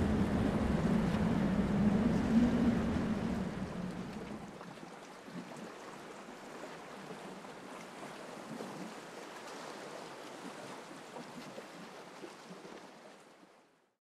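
Steady rushing ambient noise with a low hum under it; the hum drops away about four seconds in, leaving a quieter hiss that fades out near the end.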